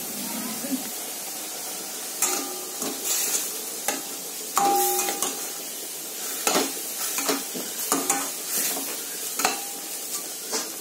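A spatula stirring thick pumpkin chutney in a stainless steel kadai: irregular scrapes and knocks against the pan, a few of which set the steel ringing briefly, over a steady sizzle of the hot mixture.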